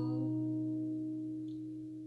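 The last strummed chord of a capoed acoustic guitar ringing out and slowly fading away.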